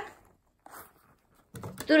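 A faint, brief rustle of a filled rubber glove being squeezed and handled, under a second in; otherwise nearly quiet.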